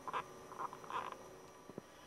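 A quiet pause in speech, with a few faint short clicks and smacks from the speaker's mouth as she gets ready to go on talking.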